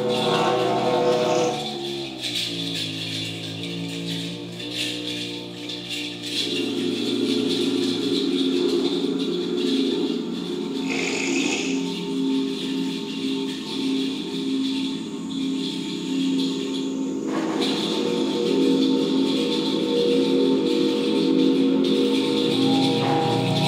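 Experimental electronic music played live through amplifiers: layered held drones that step down in pitch over the first two seconds, then settle into a dense, steady cluster of low tones with a hiss above them. A short burst of noise comes about eleven seconds in.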